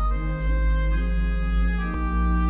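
Organ playing slow, sustained chords of offertory music.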